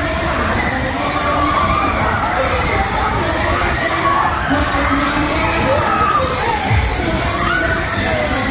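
Riders of a Musik Express ride shouting and cheering together while it runs at speed, over loud ride music.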